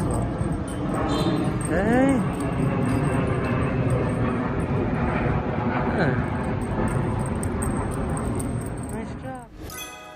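Steady outdoor street background noise, broken by a few short calls that rise and fall in pitch, about two, six and nine seconds in. Music comes in just before the end.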